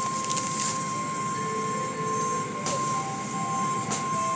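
Automatic car wash heard from inside the car: steady running of the wash machinery and water on the car, with a steady high whine throughout. Short bursts of hissing spray come about half a second in, near three seconds, and near the end.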